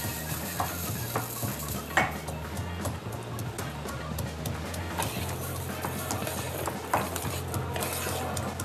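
Rice grains poured into hot oil in a paella pan and starting to fry: a sizzle with many irregular small crackles. Background music runs underneath.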